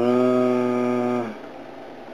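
A man's voice holding a long hesitation sound, an 'uhhh' at one steady low pitch, for a little over a second, then quiet room tone.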